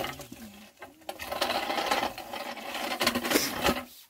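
A hiker's footsteps scuffing and crunching on rock and grit while climbing down a steep rocky gully, heard as a dense run of irregular scrapes that starts about a second in and stops just before the end.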